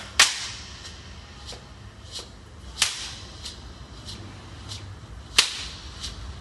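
Sparse hand percussion keeping a slow, even beat: a soft sharp click about every two-thirds of a second, with a loud crack on every fourth beat.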